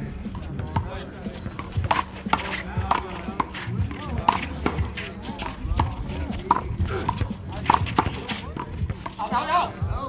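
Handball rally: a rubber handball slapped by bare hands and smacking off a concrete wall and court, a quick irregular run of sharp hits. A short shout near the end.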